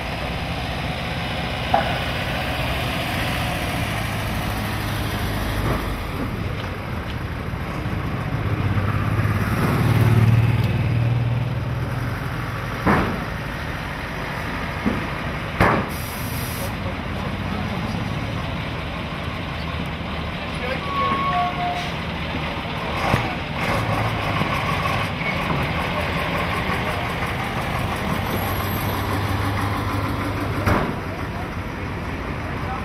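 Diesel engines of an ambulance and a fire engine running as they drive slowly past, swelling about ten seconds in. A few short sharp sounds fall in the middle, one of them typical of an air-brake release.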